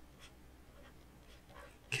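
Faint scratching and light tapping of a stylus writing on a tablet surface, a few short strokes.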